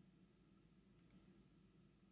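Near silence: room tone with a low hum, broken about a second in by two faint, sharp clicks in quick succession.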